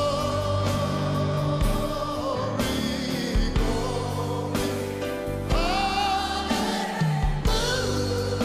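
A live gospel song: a lead singer and a group of backing singers hold long notes with vibrato over a band, with sharp drum hits in between.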